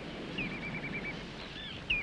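A small bird singing a quick, even run of high repeated notes, over a faint outdoor background hiss.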